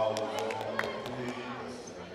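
Overlapping crowd voices in a gym during a basketball game, with a quick run of sharp knocks in the first second.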